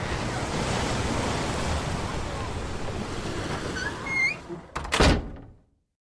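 Ocean surf washing steadily, then a door shutting with one heavy thunk about five seconds in.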